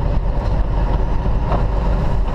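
Semi truck's diesel engine running steadily, a low rumble heard from inside the cab while the truck drives.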